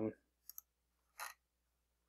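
Two short computer mouse clicks, about half a second and just over a second in, as an on-screen checkbox is toggled.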